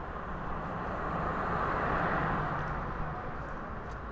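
A road vehicle passing by: its noise rises to a peak about halfway through and then fades away.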